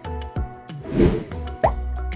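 Upbeat background music with a steady beat. About a second in comes a whoosh transition effect, then a short rising blip.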